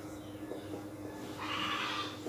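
Whiteboard marker squeaking and scratching across the board as words are written, loudest in a half-second stroke near the end.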